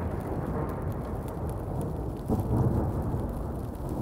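Steady, low, thunder-like rumbling roar, with a louder swell a little over halfway through.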